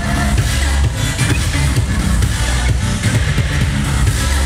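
Loud electronic dance music with a heavy bass beat, playing for the dancers.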